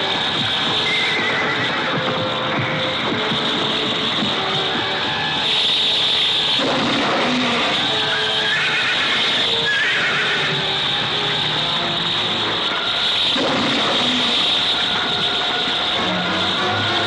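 Giant movie monster's cries: high squeals that bend up and down in pitch, heard about a second in and again around the middle, over a dense, tense orchestral film score with loud swells.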